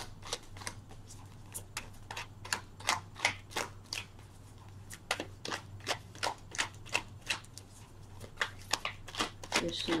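A deck of oracle cards being shuffled by hand: a run of quick, irregular card snaps and slaps, with a short lull near the middle.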